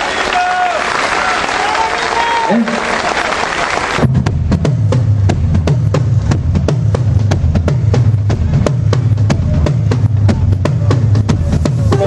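Live rock band: for about four seconds a voice sings or calls over dense crowd and stage noise, then drums and bass guitar come in together with a steady beat, a low, repeating bass line under fast, even cymbal strokes at about five a second.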